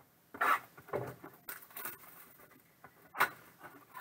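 Cardboard trading card box being handled and opened by hand: a run of short scrapes and rustles, with a sharper one near the end.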